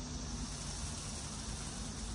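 Steady, even background hiss outdoors, with no distinct knocks or clicks.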